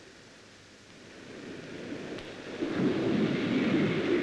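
Rumbling noise on an old film soundtrack, faint at first and swelling from about a second in.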